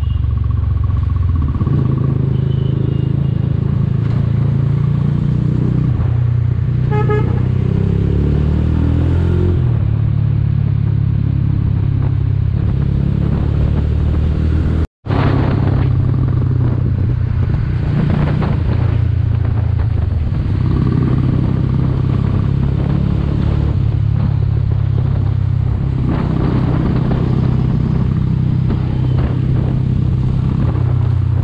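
Mahindra Mojo's single-cylinder engine running steadily while riding in traffic, its pitch shifting with the throttle, over wind and road noise. A short horn toot sounds about a quarter of the way in. The sound drops out for an instant about halfway.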